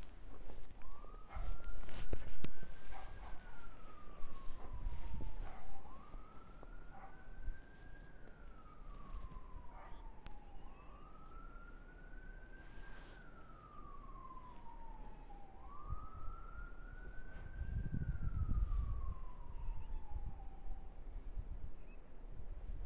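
Emergency-vehicle siren on a slow wail: four cycles, each rising quickly and then sliding slowly down, about five seconds apart. Thumps and clicks near the start are the loudest sounds, with a low rumble late on.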